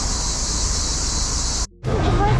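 A steady, high-pitched, hissing chorus of cicadas over a low rumble. It cuts off suddenly near the end.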